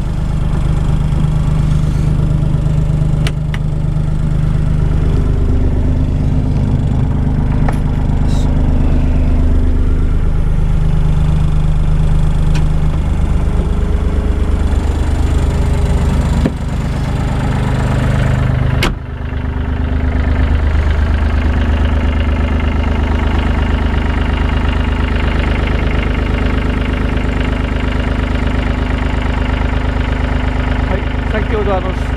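Komatsu WA20-2E wheel loader's 1,200 cc three-cylinder diesel idling, heard from inside the cab; its note shifts for a while partway through.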